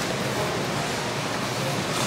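Steady rushing noise, the background din of a crowded warehouse store, with faint indistinct voices in it.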